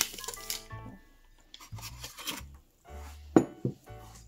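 Background music, with a ceramic coffee mug clinking as it is taken out of the Keurig brewer and set on the counter; a single sharp knock about three and a half seconds in is the loudest sound.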